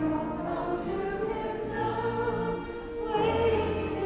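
Women's vocal trio singing a hymn into microphones over instrumental accompaniment, with long held notes and a steady bass line.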